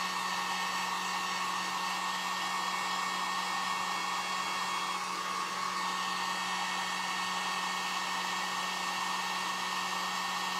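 Electric heat gun running steadily, its fan blowing hot air to dry fresh paint, with a steady motor hum under the rush of air.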